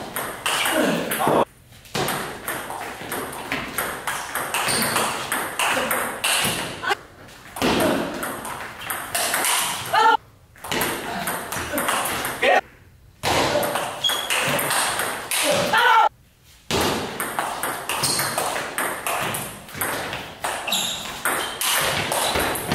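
Table tennis rallies: the ball clicking back and forth off the bats and the table in quick exchanges, broken by several short silent breaks.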